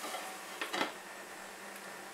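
A glass pan lid clinks as it is set down on the rim of a frying pan: a short cluster of knocks a little under a second in. Beneath it, a low steady sizzle of chopped tomatoes and onions cooking in the covered pan.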